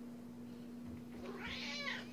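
Orange tabby house cat giving one drawn-out meow in the second half, rising and then falling in pitch. It is an attention-seeking meow, demanding to be picked up.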